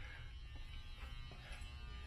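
Faint steady low hum and buzz of room tone, with no distinct events.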